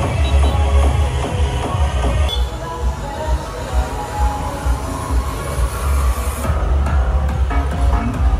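Loud electronic dance music with a heavy, steady bass beat, played over a bar's sound system on the street; its upper range thins out about two seconds in.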